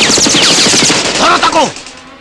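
Film sound effects of rapid automatic gunfire, a dense rattle of shots with falling ricochet whines, cutting off about a second and a half in. A voice cries out just before the firing stops.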